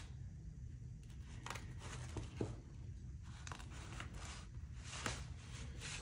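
Faint handling noise: hands brushing and picking at a fabric armor cover strewn with bullet jacket fragments, giving soft rustles and a scatter of small clicks and scrapes.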